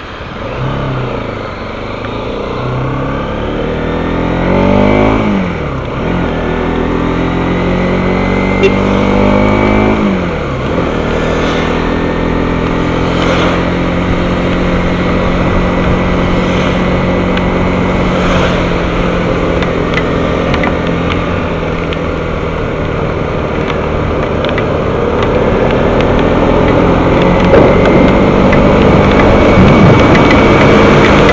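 Bajaj Pulsar NS200 single-cylinder engine pulling away hard through the gears. The revs climb, fall at a shift about five seconds in, climb and fall again about ten seconds in, then settle to a steady cruise. Tyres hiss on the rain-soaked road throughout, and a lorry's engine alongside grows louder near the end.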